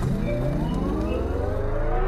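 A rising sound effect in a rap track: a pitched tone with several overtones climbing steadily and then levelling off, over a steady deep bass.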